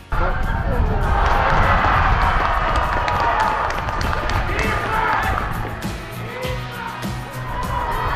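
Background music with a steady beat, laid over live football-match sound of crowd noise and voices.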